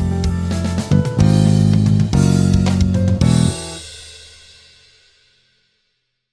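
Electric bass guitar playing over a backing track with drums, closing on a final hit about three and a half seconds in that rings out and fades away to silence.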